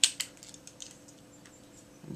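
Small hard-plastic toy vehicle, a Kenner M.A.S.K. Bullet, clicking and clattering in the hands as it is handled. There are a few sharp clicks in the first second, then only a faint steady hum.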